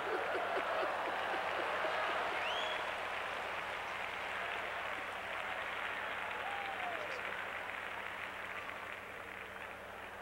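Church congregation applauding, with a few voices calling out over the clapping. The applause slowly dies away over the last few seconds.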